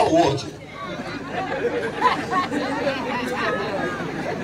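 Speech: a man's voice briefly at the start, then quieter voices of people talking among a crowd.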